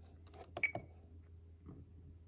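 A few soft clicks from a button being pressed on an RC radio transmitter to leave a menu page, the loudest about half a second in with a brief high tone, and another faint click later.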